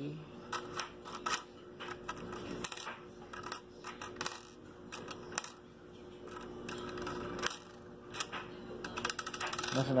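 Pennies clinking and sliding against each other on a wooden table as a hand spreads and sorts them: scattered light clicks throughout, coming quicker near the end.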